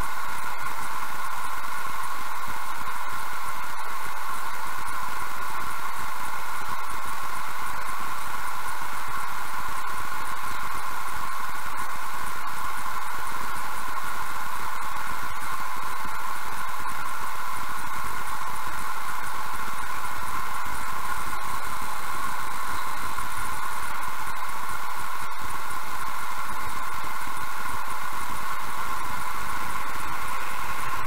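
Steady, even hiss that does not change, heard inside a stationary car.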